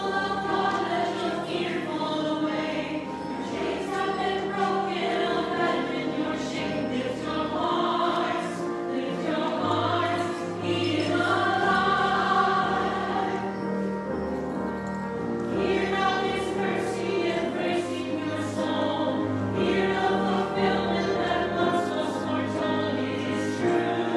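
Small mixed church choir singing together, held notes changing about every second, over sustained low accompaniment notes.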